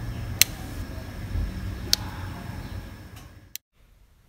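Two sharp clicks about a second and a half apart over a low background rumble, then a third click near the end, after which the sound drops to near silence.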